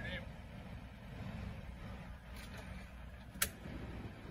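Police SUV idling at the curb, a steady low rumble, with one sharp click about three and a half seconds in.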